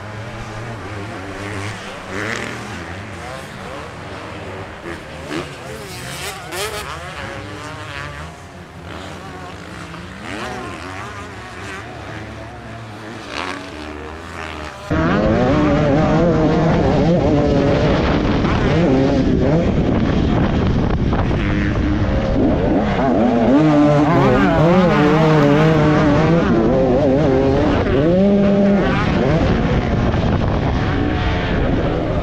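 Motocross bike engines heard from a distance, their pitch wavering up and down. About halfway the sound cuts to a close, much louder KTM 250 SX two-stroke engine revving hard and falling off again and again as it is ridden round a motocross track.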